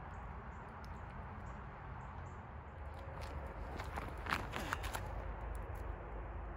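Footsteps through dry leaf litter, with a cluster of crackles and rustles between about three and five seconds in, the loudest a little after four seconds, over a steady low rumble.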